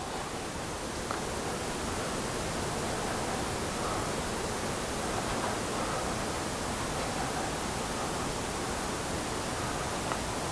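Steady hiss of room noise with no distinct event, and a faint tick about a second in.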